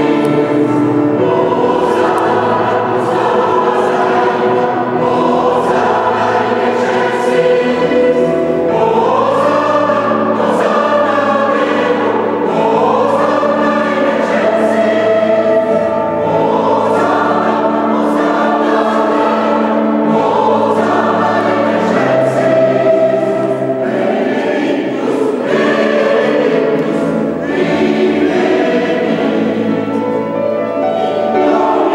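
Mixed choir of men's and women's voices singing sustained, changing chords, ringing in the stone nave of a large church.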